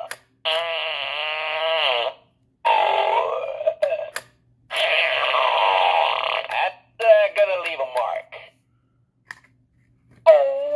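Gemmy Animated Fart Guy novelty figure playing its recorded routine through its small speaker: three long fart sounds one after another, then a few shorter sounds that stop a second or so before the end.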